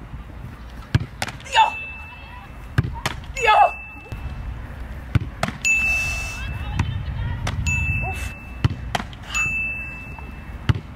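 A football struck toward a goalkeeper and caught in her gloves, again and again: sharp thuds in quick pairs, four pairs in all.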